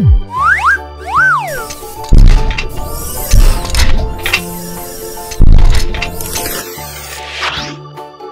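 Cartoon sound effects over children's background music with steady bass notes: a falling whistle at the very start, two quick springy rising-and-falling tones in the first two seconds, then two loud whooshing hits about two and five and a half seconds in, as parts fly onto an animated toy fire truck.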